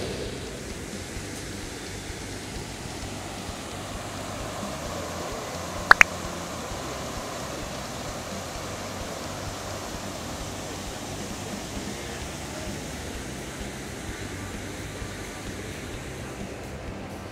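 Steady rush of water from river rapids, with a brief sharp double click about six seconds in.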